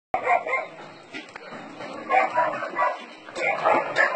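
A pack of young dogs barking in short, irregular bursts, with a quieter stretch about a second in.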